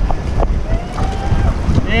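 Wind buffeting the microphone in uneven gusts over the wash of surf breaking on the rocks, with a man starting to call "yeah" at the very end.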